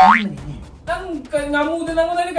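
A cartoon-style comedy sound effect at the start, a quick rising whistle-like sweep that is the loudest moment. From about a second in, a voice draws out one long held note.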